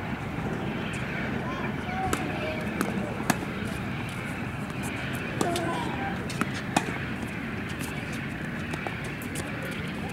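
Tennis ball struck by rackets and bouncing on a hard court: several sharp pops at uneven spacing, most of them between about two and seven seconds in, over distant voices and a steady background rumble.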